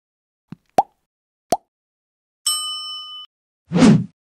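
Animated end-screen subscribe-button sound effects. Three short pops come in the first second and a half. A bright bell-like chime starts about two and a half seconds in and lasts under a second, and a whoosh follows near the end.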